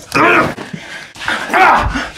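A man's voice: two loud, strained yells about a second apart, the second one longer.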